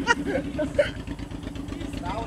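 Cruiser motorcycle's V-twin engine idling steadily.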